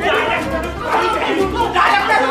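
Several people's voices talking over one another in a jumble, with no clear single speaker.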